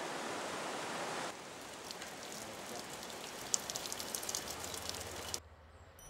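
Water running from the spout of a Borjomi mineral-spring fountain as a plastic bottle is filled: a steady hiss with light splashes and clicks. It cuts off shortly before the end.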